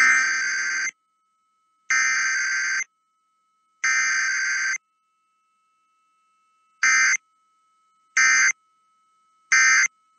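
Emergency Alert System SAME data bursts over FM radio for a Required Weekly Test: three buzzy header bursts of about a second each, a second apart, then three short end-of-message bursts. A faint steady tone lingers between the bursts.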